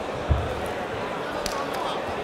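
A boxing bout in the ring: one heavy low thud a third of a second in, from a punch or a foot landing on the canvas, then a sharp click at about a second and a half, over steady crowd chatter.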